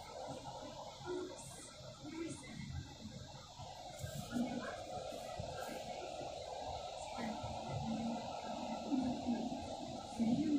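Steady hiss of rain falling outside an open window. Faint, indistinct murmur-like sounds sit underneath.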